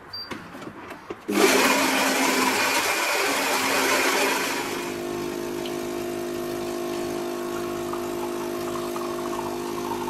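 Philips fully automatic bean-to-cup espresso machine brewing a strong coffee. About a second in, its built-in grinder starts grinding beans for about three seconds. Then the pump hums steadily as coffee runs into the cup.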